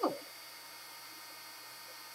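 Quiet room tone: a steady faint hiss and hum, with the tail of a spoken word at the very start.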